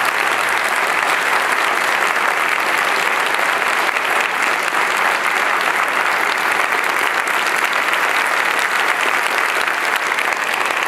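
Audience applauding steadily, a dense, even clapping.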